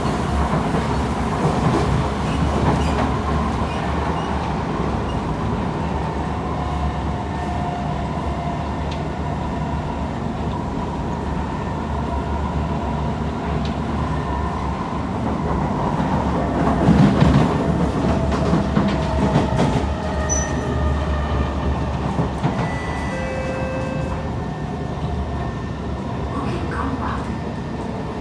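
Cabin noise of a Kawasaki–Kinki Sharyo C151 metro train running along the track: a steady rumble of wheels on rail with faint whining tones. It grows louder, with a stretch of clatter, about 17 seconds in.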